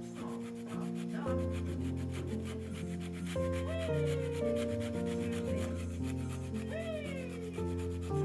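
Orange peel being zested on a small flat metal hand grater: quick, repeated rasping scrapes. Soft background music with sustained notes plays under it, with a bass line coming in about a second in.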